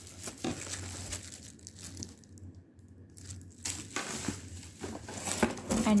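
Plastic wrapping crinkling and rustling as a wrapped blender is handled in its cardboard packaging, in irregular bursts that get louder in the second half.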